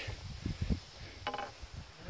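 Quiet movement of cross-country skiing through deep, untracked snow: soft low thuds from skis and poles a little under a second in. A short voice sound comes about a second and a quarter in.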